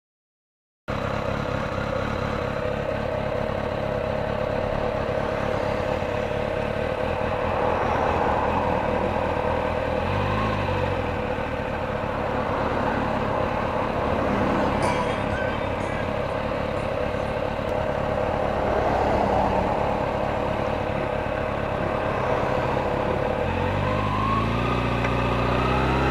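Kawasaki Ninja 636 (ZX-6R) inline-four engine idling steadily, starting about a second in, with cars passing now and then. Near the end a deeper engine sound builds as another motorcycle comes up.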